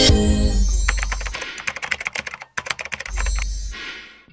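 Channel outro sting: a loud musical hit with a deep boom, then a run of rapid clicks like keyboard typing, a brief break, and a second booming hit near the end before it fades out.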